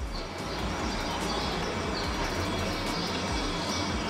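Steady background noise: a low rumble under an even hiss, with no distinct events.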